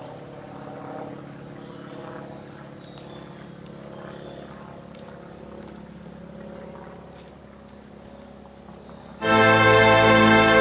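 Quiet background music of held, sustained tones, then much louder music cuts in suddenly near the end.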